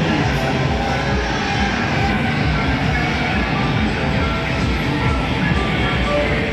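Loud, steady arcade din: electronic music and short beeping jingles from several game machines playing over each other.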